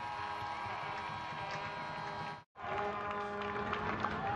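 Steady stadium crowd noise at a soccer match, with a brief total dropout about two and a half seconds in.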